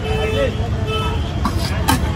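Steady rumble of street traffic with voices of passers-by, and a sharp tap near the end.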